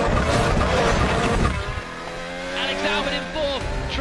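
Formula One cars running at race speed, their engine notes sweeping up and down in pitch; loudest for the first second and a half, then dropping to a quieter steady engine note with commentary starting near the end.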